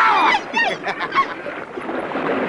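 A long, drawn-out, honk-like vocal cry that ends about half a second in, followed by a few short vocal sounds, then a steady wash of sea surf.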